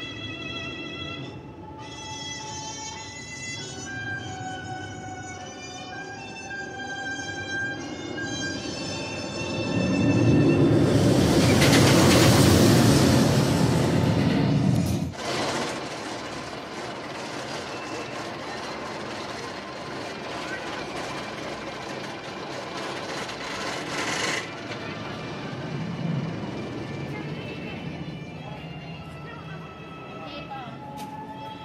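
Roller coaster train passing on Steel Vengeance's steel track: a loud rumbling roar builds about ten seconds in and cuts off suddenly some five seconds later, followed by a fainter rushing noise. Background music plays before and after it.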